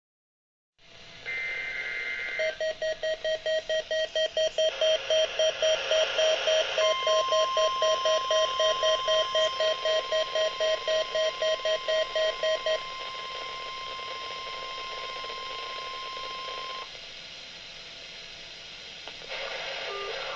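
NOAA weather alert radio going off for the Required Weekly Test: its alarm beeps rapidly, about four beeps a second, for about ten seconds. Overlapping the beeps, the broadcast's long steady warning alarm tone plays for about ten seconds and then cuts off, leaving radio hiss.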